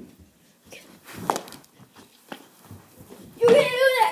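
A child's loud, high-pitched shout lasting about half a second near the end, after a few soft knocks.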